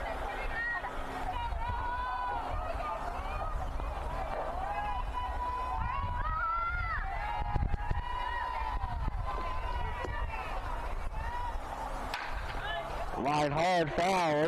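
Softball players' high voices calling and chanting in the distance, rising and falling in a sing-song way, over a steady low rumble.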